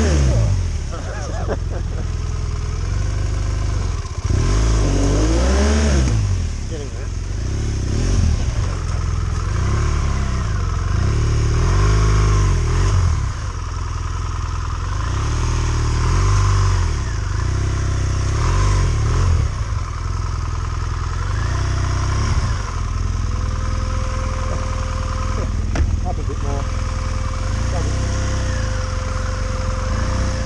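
BMW adventure motorcycle engine revved up and down over and over as the bike churns through deep mud, the rider working the throttle to pull it free of being bogged.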